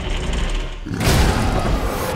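A low rumble builds, then a heavy crash about a second in, as a giant gorilla smashes out of its wire-mesh cage, with loud rumbling noise running on after the impact.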